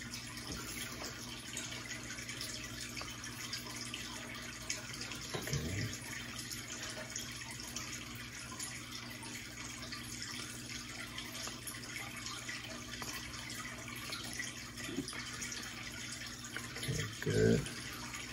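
Aquarium filter running, a steady trickle of falling water with a faint low hum underneath.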